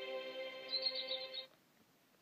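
Closing bars of a cartoon's children's song: a held musical chord with a brief high twinkling flourish that ends abruptly about a second and a half in, leaving only faint background hiss.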